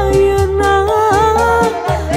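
A woman sings a Sundanese bajidor song with a live band: a long held vocal note over steady bass and an even drum beat.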